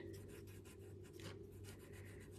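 A paper tortillon (blending stump) rubbing graphite shading into a paper tile, heard as faint, quick, repeated scratchy strokes.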